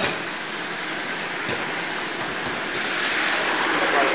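Steady rushing background noise across a futsal pitch, with a few short knocks of a futsal ball being kicked on artificial turf, the clearest about a second and a half in.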